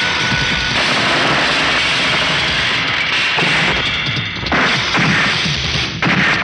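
Film fight-scene soundtrack: a dense, loud run of dubbed punch, smash and crash sound effects from a brawl, mixed with background music.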